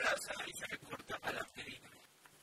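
Soft, irregular rustling and scratching: hands smoothing a cotton T-shirt flat on a wooden table and a pen starting to mark the cloth, fading out near the end.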